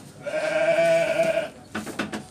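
A Garut sheep bleating once, a steady call of about a second and a quarter. A few light knocks follow near the end.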